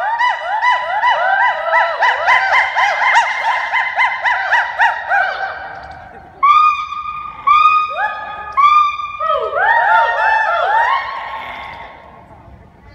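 Gibbons singing: a fast run of rising, swooping whoops, about four a second, fades out; then, after a short gap about six seconds in, louder held notes give way to another run of quick rising whoops.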